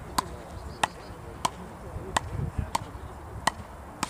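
Frescobol paddles striking the ball in a fast rally: a series of sharp, short hits about two-thirds of a second apart.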